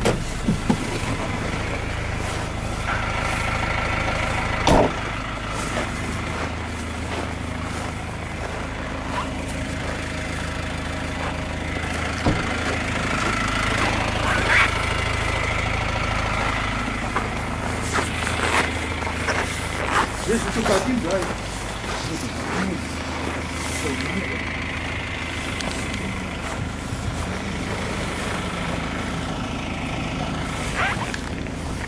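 GAZelle van's Cummins diesel engine idling steadily, with scattered clicks and knocks over it.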